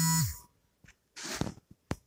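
The reader's voice trails off on a held note at the start, then pauses. A short soft breath is drawn in about a second in, followed by a single sharp click near the end.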